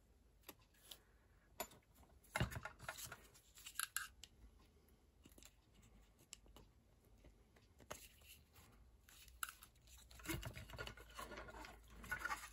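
Faint handling noise from a small plastic blower fan: scattered light clicks and short scrapes of fingers and screws against the fan housing and its rubber grommets. There is busier rubbing near the end as the fan is set into the router's metal chassis.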